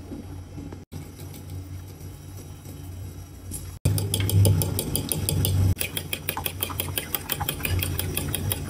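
Metal spoon beating four raw eggs in a plastic bowl. From about four seconds in it clicks rapidly against the bowl, about five or six strikes a second, over a steady low hum.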